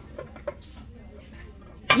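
Nested ceramic baking dishes knocking lightly together as they are handled, a couple of faint clinks in the first half second.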